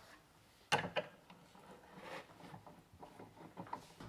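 Two sharp knocks a little under a second in, followed by faint scattered clicks and handling noise.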